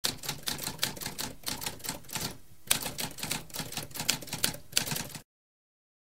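Typewriter keys being struck in rapid keystrokes, several a second, with a brief pause about halfway, then stopping about five seconds in.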